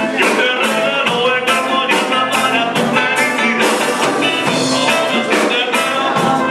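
A live band playing an upbeat song, with a quick, steady beat under held instrumental notes.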